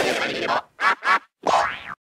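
Cartoon sound effects from an animated studio logo: a wobbling, springy sound for the first half second, then two short boings about a second in, and a last boing near the end that fades away.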